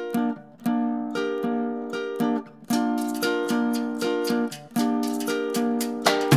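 Tenor guitar playing a solo song intro: plucked chords about two a second, each ringing and fading before the next.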